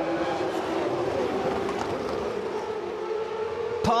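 GP2 race cars' V8 engines running at high revs, a steady whining note that climbs slowly in pitch as the cars accelerate.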